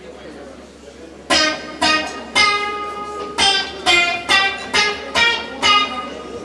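Acoustic guitar picking single notes as the song's opening phrase. About a second in it starts a slow run of around nine ringing notes, each struck and left to decay before the next.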